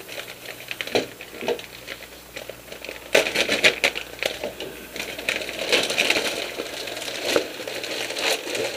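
Clear plastic packaging bag crinkling and crackling as it is handled and opened, in irregular bursts that are loudest about three seconds in and again around six seconds, with a few sharp clicks before that.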